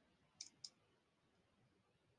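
Two quick computer mouse clicks, about a quarter second apart, with near silence around them.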